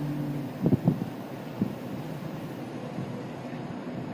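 Steady low rumble with wind noise on the microphone. A hummed tone trails off about half a second in, and a few sharp knocks follow about a second in.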